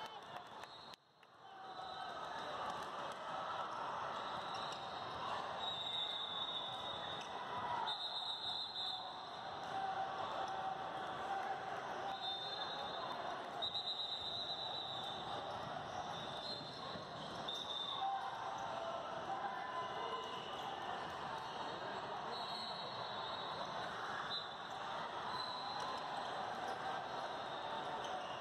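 Youth basketball game in a large, echoing hall: basketballs bouncing on the court over a steady din of voices from players and spectators, with short high-pitched tones now and then.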